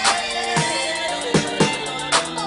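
Background music: an instrumental passage of a hip hop track, with a steady beat of drum hits under sustained synth tones.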